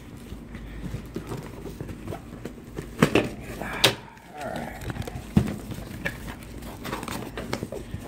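A large taped cardboard box handled and shifted on a glass tabletop: low scraping and rustling, with three sharp knocks about three, four and five and a half seconds in.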